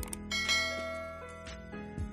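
A click, then a bright bell chime about half a second in that rings out and fades over roughly a second. This is the notification-bell sound effect of a subscribe-button animation, over soft background music.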